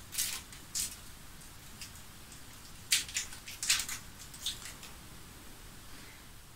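A lipstick being opened by hand: a few short, faint clicks and rustles from its case and packaging, two near the start and a cluster around the middle.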